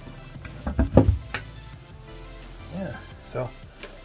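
Wooden floor hatch panel being lowered and set into its frame in a sailboat's cabin sole: a couple of heavy thuds about a second in, followed by a sharp click.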